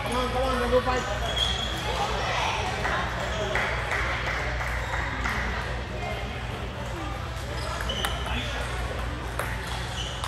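Table tennis balls clicking off paddles and tables during rallies, scattered sharp ticks, with indistinct voices in the hall behind.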